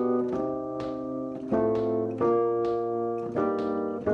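Electronic keyboard playing a run of five sustained chords. Each chord is held about a second before the next one comes in. It is a practice pass through a gospel chord progression.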